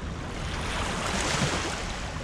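Wind rumbling on the microphone on an open shoreline, with a rush of noise that swells about half a second in and fades again near the end.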